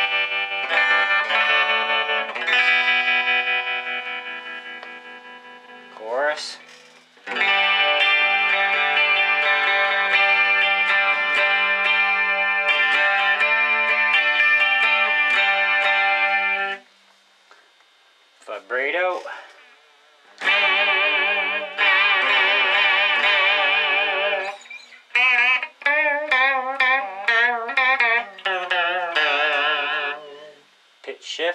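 Electric guitar played through a Boss ME-80's modulation effects: strummed chords ring out, a long held chord cuts off about 17 seconds in, and after a short pause notes and chords come back with a steadily wavering pitch.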